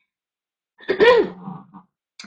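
A woman clears her throat once, about a second in, ending in a short low hum.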